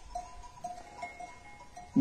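Faint, scattered clinks of bells on a grazing flock of sheep, a few short ringing tones spread through the quiet.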